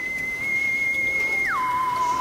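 A single pure, whistle-like electronic tone held high, then sliding down about an octave about one and a half seconds in and holding at the lower pitch: an edited-in sound effect.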